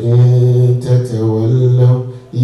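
A man's voice intoning a drawn-out chant, Quranic-recitation style, holding one low, nearly steady pitch, with a brief break just under a second in.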